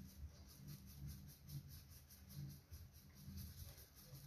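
Near silence: faint low room tone.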